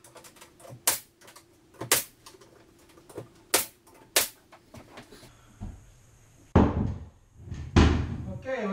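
Pneumatic finish nailer firing four sharp shots into door casing trim over the first half. Two heavier thumps follow near the end.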